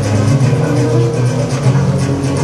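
Recorded music playing loudly over a hall's sound system, with sustained low notes and a light, regular beat.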